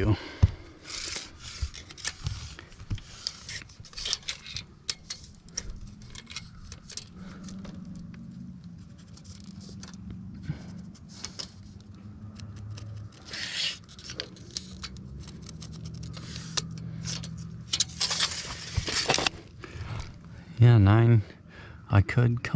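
Hand work with a tape measure and marker on a roofing membrane: scattered clicks, rustles and scrapes, with a longer scraping rush a few seconds before the end. A brief bit of a man's voice comes near the end.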